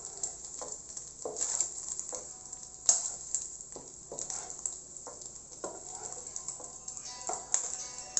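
Egg frying in hot oil in a nonstick wok, sizzling, with a spatula scraping and knocking against the pan as it is stirred. One sharper knock comes about three seconds in.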